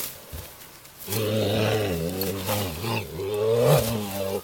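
A quarter horse groaning while rolling on its back in the dirt. One long, low, wavering groan starts about a second in and is loudest near the end.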